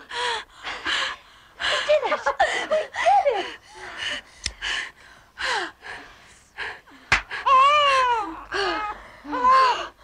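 A woman in labour gasping and crying out in short, breathy bursts of strained breath. A sharp click comes about seven seconds in, and then high wailing cries begin: a newborn baby starting to cry.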